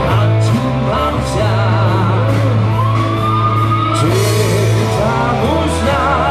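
Live rock band playing loud through a hall PA: electric guitars, bass, drums and a male singer. A cymbal crash comes about four seconds in.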